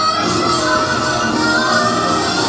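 Korean pungmul folk band playing continuously, with gongs and drums under a wavering high melody line.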